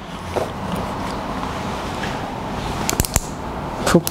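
Steady room background noise with a few sharp clicks about three seconds in.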